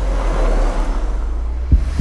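A car driving along a road, over a steady deep rumble, with one sharp low hit near the end.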